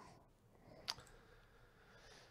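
Near silence with a single short click about a second in.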